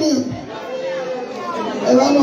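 A woman's voice amplified through a handheld microphone, chanting a repeated phrase in long held notes, with room chatter behind it. A quieter held note comes in the first half, and a strong new phrase begins near the end.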